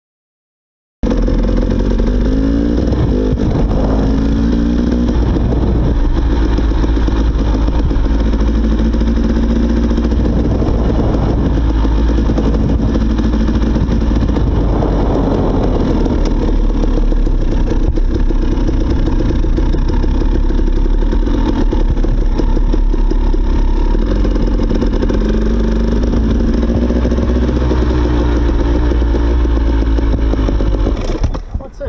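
Dirt bike engine running as the bike is ridden slowly, its pitch rising and falling with the throttle several times. The sound cuts in suddenly about a second in.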